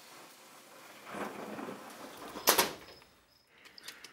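Handling noise from an ECU circuit board being moved and laid down on a wooden workbench: a soft rustle, then one sharp clack about two and a half seconds in.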